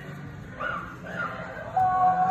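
A person's high-pitched voice: short rising cries about half a second in, then a long wavering held note near the end.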